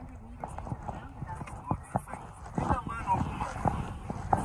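Metal cutlery tapping and clinking against a plate in short, irregular strikes, a few a second, with faint voices in the background.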